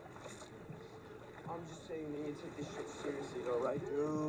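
A TV drama's soundtrack playing at low level: water and harbour ambience, with faint dialogue voices coming in about a second and a half in.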